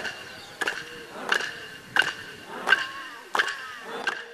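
Clapsticks struck in a steady ceremonial beat, about three strikes every two seconds, each with a short bright ring.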